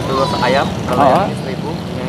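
Brief conversational speech in Indonesian over a steady background hum of street traffic.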